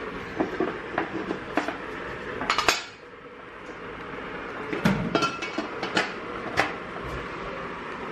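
Crockery and cutlery clinking and knocking as tea things are handled on a kitchen counter: a string of sharp clinks, a louder clatter before the middle, a short lull, then a few more knocks.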